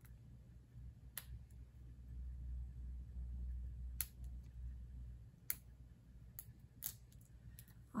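Small reagent capsule from a soil pH test kit being twisted and worked open by hand: faint, scattered clicks and snaps, about seven over the stretch, over a low rumble in the middle.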